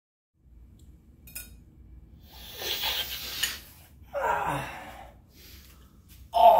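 A man sniffs hard and long, then lets out a short groaning breath that falls in pitch. A couple of faint clinks on a ceramic plate come first.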